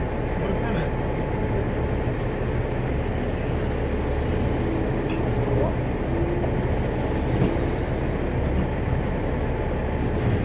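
Heavy tow truck's diesel engine idling steadily, a constant low drone.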